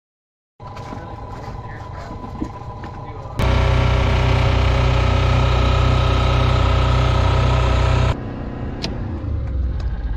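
Steady machinery running with an even hum. About three and a half seconds in it jumps to a much louder, deeper hum, and it drops back suddenly about eight seconds in.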